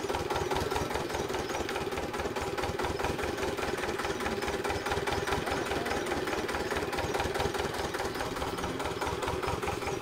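Stationary flywheel engine of a water-well drilling rig running steadily, with a rapid, even knocking beat from its firing strokes.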